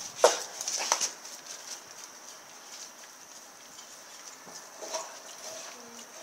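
Rottweiler chewing and gnawing on a raw pork shoulder, with two sharp, loud bites in the first second and another about five seconds in.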